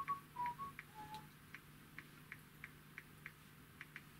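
A few short whistled notes at the start, stepping up and down in pitch and fading out after about a second. After that, a faint, even ticking, about three ticks a second.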